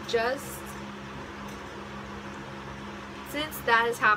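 A steady low hum fills a small room, with a woman's voice speaking briefly at the start and again near the end.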